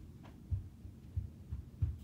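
Muffled, low thuds of footsteps climbing stairs, roughly one step every two-thirds of a second.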